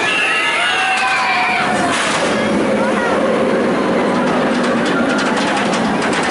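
Riders on a roller coaster yelling and screaming in long, gliding cries, over a steady bed of crowd voices and ride noise.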